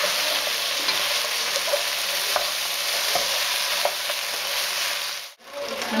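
Pork spare ribs sizzling in a hot pot while a spatula stirs them, with small scrapes and taps against the pot. The sizzle cuts off suddenly a little after five seconds in.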